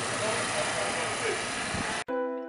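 Faint voices of people talking over steady outdoor background noise.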